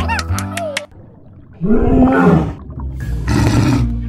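A cartoon monster roar sound effect, loud and rough, about two seconds in, followed by a second noisy roar-like burst near the end. A few short musical notes play in the first second.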